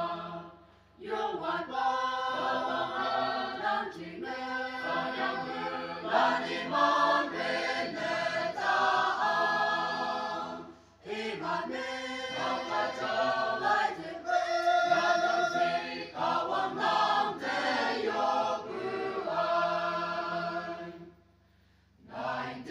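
A choir singing, with short breaks between phrases about a second in, around eleven seconds in, and near the end.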